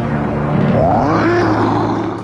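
Cartoon Charizard's roar: one long cry that rises and then falls in pitch, starting a little after halfway through, over dramatic background music.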